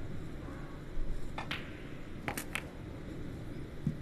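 A snooker shot: a sharp click of the cue tip on the cue ball about a second and a half in, then three quick clicks of the balls colliding about a second later, over the low hum of the arena.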